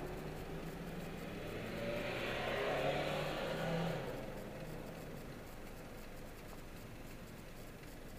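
Car engine and road noise heard from inside the cabin. The sound swells for a couple of seconds, about two seconds in, then settles to a lower, steady hum as the car slows in traffic.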